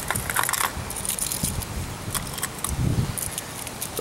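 Heddon Tiny Torpedo lures and their metal treble hooks clinking and jingling against each other and the plastic tackle box as a handful is scooped up. The clicks come thickest in the first second, then scattered.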